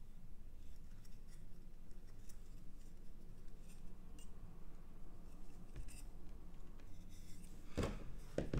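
Light clicks and taps of small electronic components and a printed circuit board being handled on a workbench, over a low steady hum, with a sharper click near the end.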